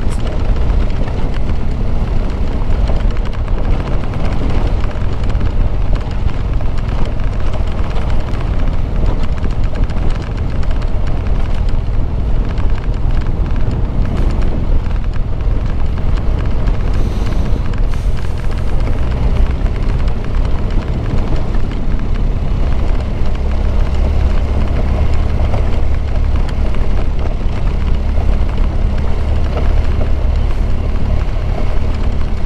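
BMW R1200GS flat-twin engine running steadily as the motorcycle is ridden along a dirt road, mixed with continuous low wind rumble on the microphone.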